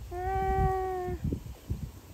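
A single drawn-out vocal call, held at one pitch with a slight fall, lasting about a second.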